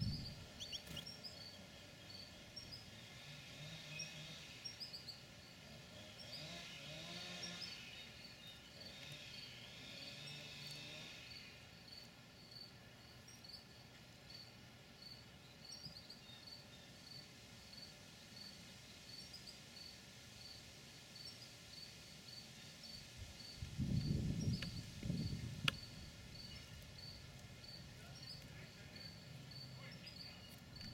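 An insect chirping in a steady, even rhythm, about three short high chirps every two seconds, with a brief low rumble about 24 seconds in.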